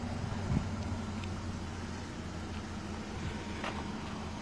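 A steady low hum from an idling car engine, with a faint knock about half a second in.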